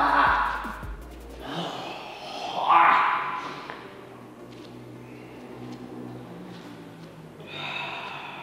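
A man groaning and gasping after being struck and taken down: a loud groan at the start, another about three seconds in, and a softer one near the end. Faint background music runs underneath.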